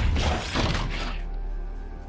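Film sound effects of a giant robot: loud metallic crashing and clanking with several sharp hits in the first second. These give way to a low orchestral music drone.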